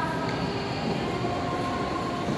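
Steady rumbling hum of a large indoor shopping-mall hall, with faint sustained tones held over it.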